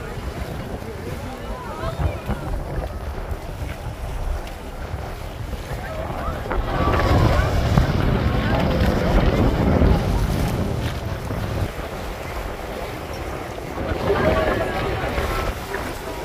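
Wind buffeting the microphone on a moving boat, over the rush of the sea and the boat's engine, with passengers' voices in the background. The noise swells for a few seconds in the middle as a second rigid inflatable boat passes close alongside.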